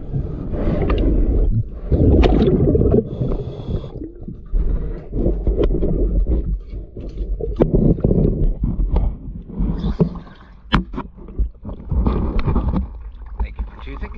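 Underwater sound around a diver working on a boat hull: repeated gurgling bubble surges of a second or two each, typical of a scuba regulator's exhaust while breathing, with a few sharp clicks and knocks in between.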